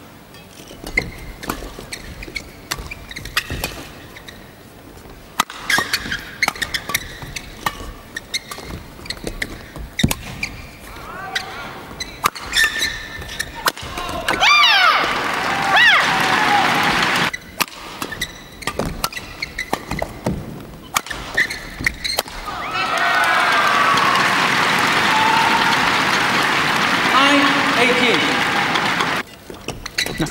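Badminton doubles play in an arena: sharp clicks of rackets striking the shuttlecock through the rallies, over crowd noise. The crowd shouts and cheers, loudest in a long stretch of cheering in the last quarter.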